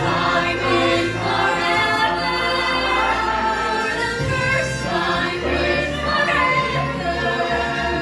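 Mixed ensemble of young voices singing together in chorus, with instrumental accompaniment underneath, in long sustained phrases.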